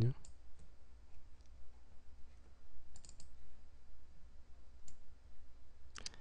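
Scattered computer mouse clicks: two just after the start, a quick cluster of three about three seconds in, and one more near five seconds. A faint steady low hum runs underneath.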